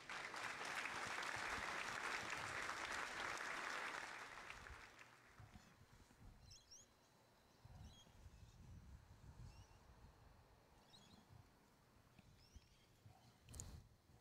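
Spectators clapping for a good shot, dying away after about four or five seconds.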